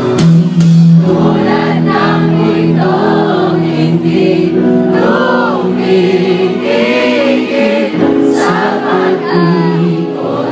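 Live band playing a song over a loud concert sound system, a singer's voice carried by many crowd voices singing along.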